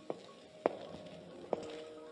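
Three sharp knocks from a radio-drama sound effect. The second, just past half a second in, is the loudest. A faint sustained music cue holds underneath.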